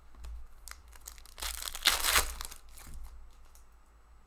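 Foil wrapper of a hockey card pack being torn open and crinkled by hand. It comes as one burst about a second and a half in, lasting under a second, with a few faint handling clicks before it.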